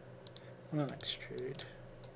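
Two sharp computer clicks about a quarter of a second in, then a short wordless vocal sound near the middle, over a low steady hum.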